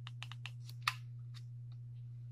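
Quick series of clicks from buttons being pressed on a FLIR CM83 clamp meter, the loudest just under a second in and a faint last one near the end, over a steady low hum.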